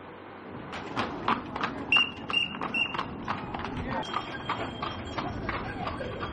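Horse hooves clip-clopping on a stone-paved street as a horse-drawn carriage moves along. The strikes start about a second in and come about four a second. Three short high tones sound about two to three seconds in.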